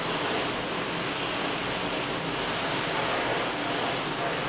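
Steady, even hiss of background noise with no distinct strokes or tones.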